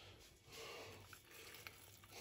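Near silence: chopped chives dropping onto cooked mussels in a steel pot, a faint soft patter with a couple of light ticks.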